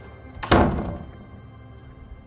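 A single heavy thud about half a second in, dying away over the next half second, over low sustained background music.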